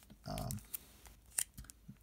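Fingers handling a trading card in a clear plastic top loader and sleeve: a few light plastic clicks and crinkles, the sharpest about three-quarters of a second in and another at about one and a half seconds.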